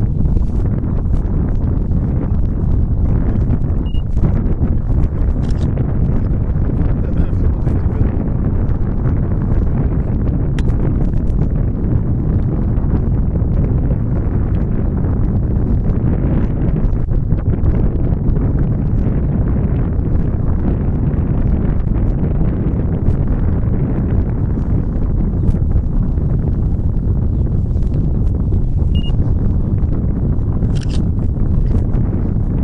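Wind buffeting the microphone: a steady, loud low rumble, with a few faint clicks scattered through it.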